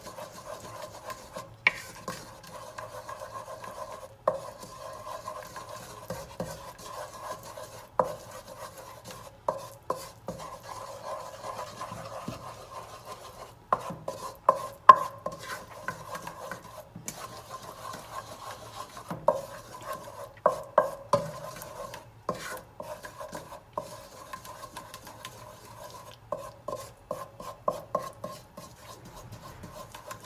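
A wooden spoon stirring and scraping a butter-and-flour roux in a saucepan, with frequent sharp taps of the spoon against the pan. A steady sizzle of the hot butter and flour runs underneath.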